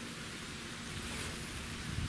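Wind blowing through the trees on a wooded island, a steady, even hiss of leaves.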